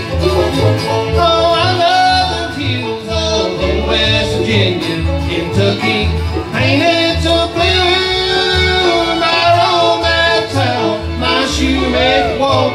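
Live bluegrass band playing: banjo, acoustic guitars and upright bass under a steady bass pulse, with a sung line ending about a second in.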